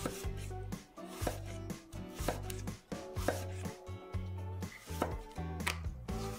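Chef's knife slicing through daikon radish and striking a wooden cutting board, a crisp stroke about once a second.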